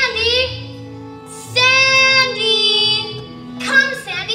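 A girl calling a dog by name in long, drawn-out sung-out calls, a short one at the start, a long held one in the middle and another near the end, over sustained underscoring from a pit orchestra.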